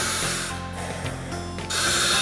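Air hissing through a firefighter's Scott SCBA breathing apparatus as the wearer breathes: air from the cylinder feeding through the hose and the mask's regulator, heard as two hisses, one at the start and one near the end.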